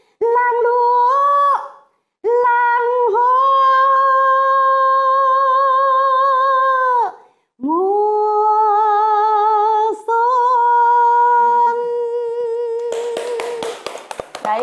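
A woman singing unaccompanied. She sings a short phrase, then holds two long notes with a steady vibrato to close the song. Hand clapping starts just before the end.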